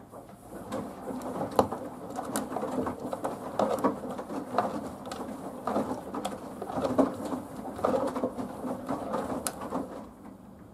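Samsung WW90K5410UW front-loading washing machine's drum turning, with wet laundry tumbling and sloshing through water. The sound comes in surges about once a second with occasional sharp clicks, and it starts and stops as one turn of the drum.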